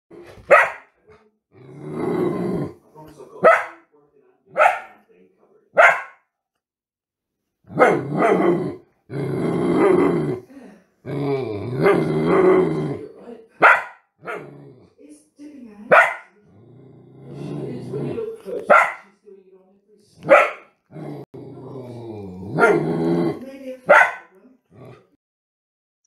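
A series of recorded dogs barking, played one clip after another. Single short, sharp barks alternate with longer, drawn-out pitched vocalizations that last a few seconds each, with brief gaps of silence between clips.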